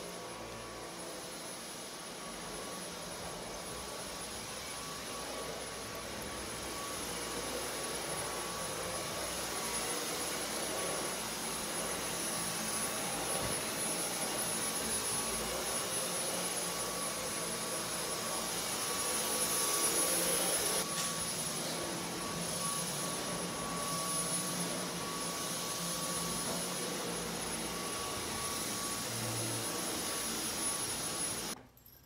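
A Dyson vacuum cleaner running steadily: an even motor roar with a steady high whine, growing louder for a few seconds around the middle as the vacuum comes closer.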